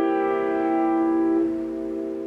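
Piano holding the closing C7 chord of a blues lick, the notes ringing on and slowly dying away with no new notes struck. About a second and a half in, the upper notes stop and the lower chord keeps ringing more quietly.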